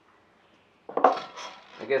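A short burst of metallic clinks and clatter about a second in, lasting under a second, from the metal parts of a bar clamp being handled on a plywood cabinet box.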